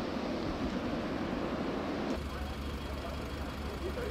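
Wildfire burning, a dense rushing hiss, which cuts off about two seconds in to the low steady hum of fire engines idling.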